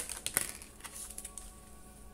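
Tarot cards being handled and one laid down on a table: a quick run of light clicks and flicks in the first half second, then a few fainter ticks.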